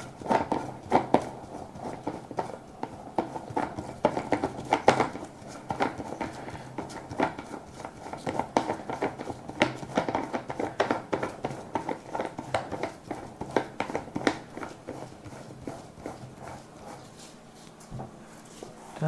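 Hands gripping and turning a sisal-rope-wrapped cat scratching post to screw it onto its plush-covered lower post: a steady run of irregular scratchy rustles and small clicks, with a few louder knocks along the way.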